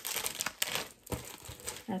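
Clear plastic bags crinkling as bagged dolls are handled, a run of short crackles with a brief pause about a second in.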